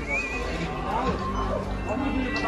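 The cinema's sound system plays an advert's soundtrack through the hall, with a short wavering high-pitched call right at the start and people's voices mixed in.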